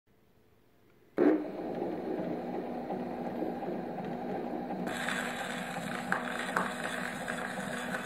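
Columbia BC Graphophone's reproducer setting down on a pink Lambert celluloid cylinder record about a second in with a sudden thump, then the lead-in groove playing: steady surface noise over the machine's running hum, turning hissier a little after halfway.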